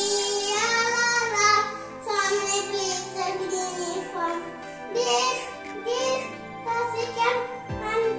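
A song sung in a child's voice over steady instrumental accompaniment, the melody moving in short phrases.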